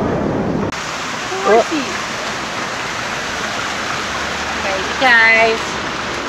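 Steady splashing rush of fountain water, starting abruptly under a second in after a brief stretch of louder street noise.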